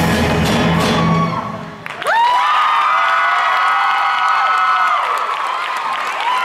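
A rock band's bass guitar and drums play their last notes and stop about a second and a half in. The audience then cheers, with several long, high whoops held for a few seconds.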